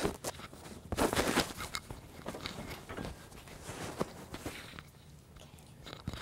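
Clothing rustle and small clicks and knocks from handling a clip-on microphone, with a dense burst of rustling about a second in.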